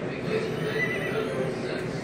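Slot machine sound effect of a horse whinnying, played through the machine's speaker as a win on the chariot symbols comes up.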